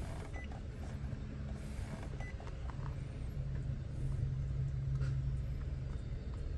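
Heavy truck's diesel engine idling, heard inside the cab as a steady low hum that grows a little louder in the second half. Two short high beeps from the tracker keypad as keys are pressed, about half a second in and about two seconds in.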